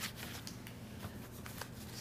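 Faint rustling of paper with a few light clicks, over a steady low hum in a quiet room.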